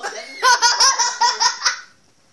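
A loud, high-pitched burst of laughter in rapid pulses, about six a second, starting about half a second in and stopping shortly before the end.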